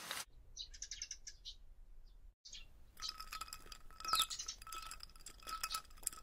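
Birds chirping in short high bursts, joined about halfway through by a held, ringing chime-like tone.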